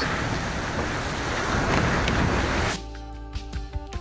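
Wind blowing across the microphone and sea water rushing past an IMOCA 60 racing yacht under way, a dense, steady rush. Near the end it cuts off suddenly and gives way to music with sustained chords.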